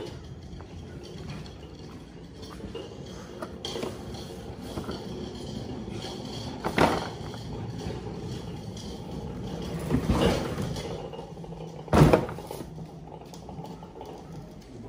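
Handling noise and footsteps of someone walking through a garage, with a few knocks and thumps, the loudest about twelve seconds in.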